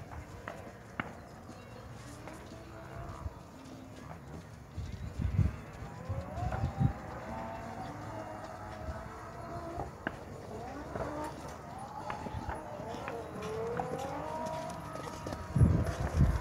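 A horse's hoofbeats on arena dirt as it canters a jumping course: a few dull thuds about five to seven seconds in and again near the end. A faint voice carries through the second half.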